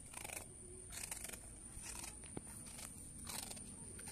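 A dog chewing a dry rusk, with a crisp crunch roughly once a second.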